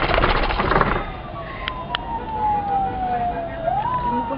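A siren wailing, its single tone falling slowly in pitch for over two seconds and then rising again near the end. A loud, rough rush of noise fills the first second.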